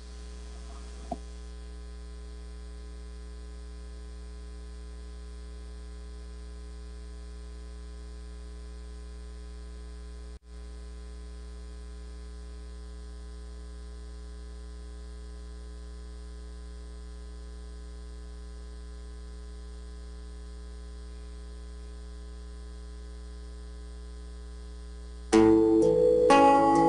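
Steady electrical mains hum with its overtones, dipping out for an instant about ten seconds in. Right at the end, guitar music and singing come in.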